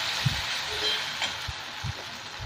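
Onion, tomato and ginger paste sizzling in hot mustard oil in a frying pan while a metal spatula stirs it, with a few soft knocks of the spatula against the pan. The sizzle fades toward the end.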